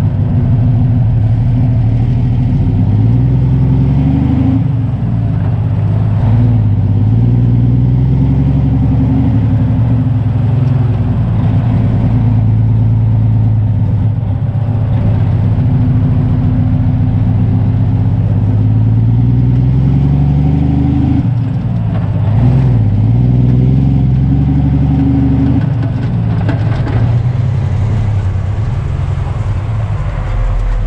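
Diesel engine of a semi-truck pulling a heavily loaded flatbed of lumber, revving up under load. Its pitch climbs and drops back at gear changes, about five seconds in, around twenty-one seconds and again near the end, with a long steady pull in the middle.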